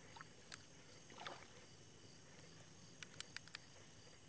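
Near silence: faint outdoor night ambience with a few small, quiet clicks, a cluster of them about three seconds in.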